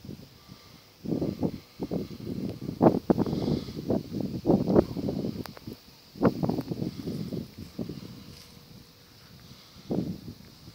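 Irregular rumbling and rustling right on the microphone, from wind gusts or handling, starting about a second in and easing off near the end.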